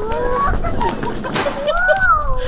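Young children's excited high-pitched cries and squeals, several voices overlapping, as they spot a surprise.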